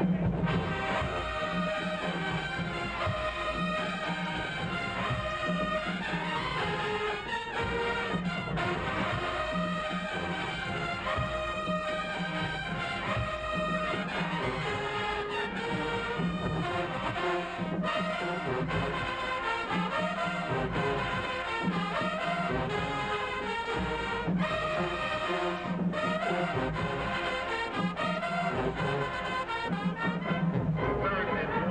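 Marching band brass and drums playing a loud, continuous stand tune with a steady beat.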